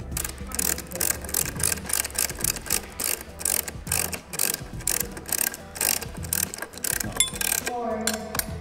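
Hand socket ratchet wrench clicking repeatedly as it turns a bolt on a copper power rail, the pawl ticking with each back-and-forth stroke.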